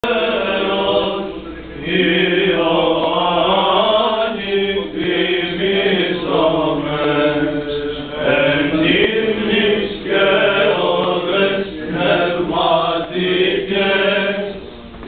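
Byzantine chant of the Greek Orthodox Divine Liturgy at the Small Entrance: voices singing a melody over a steady low held drone, with short dips between phrases.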